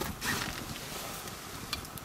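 Small open wood fire crackling with scattered light clicks under a metal pan of milk being heated.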